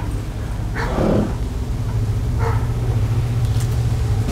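A horse blows out through its nostrils about a second in, once, with a fainter blow near the middle, as it sniffs at the floor of the trailer. A steady low hum runs underneath.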